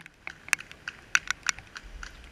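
Irregular sharp ticks and taps at an uneven pace, about eight in two seconds, the loudest right at the start, made by raindrops hitting the camera's waterproof housing.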